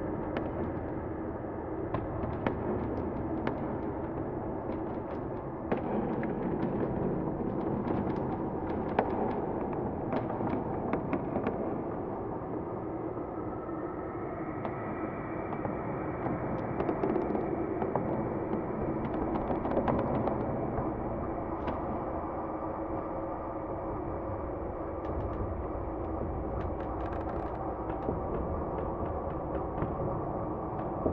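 Layered dark ambience soundscape: a steady droning bed with many sharp cracks and pops scattered through it, thickest in the first half and again near the end.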